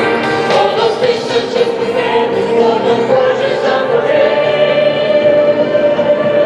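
Music with choral singing, the voices holding long sustained notes.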